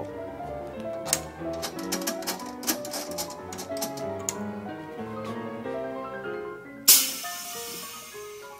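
Background music with scattered sharp clicks. About seven seconds in comes a sudden loud hiss of air lasting about a second, from the Stretch Master's pneumatic stretch cylinder being actuated.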